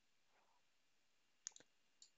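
Near silence, broken by two quick computer-mouse clicks about one and a half seconds in.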